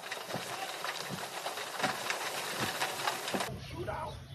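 Steady hissing, rustling noise with faint scattered knocks from the audio of a played-back video recording. About three and a half seconds in, the recording's sound changes and a low hum comes in.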